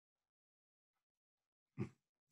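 Near silence, broken near the end by one short, low thump.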